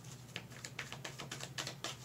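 Tarot cards being shuffled by hand: a quick, uneven run of light clicks and slaps as the cards slide against each other.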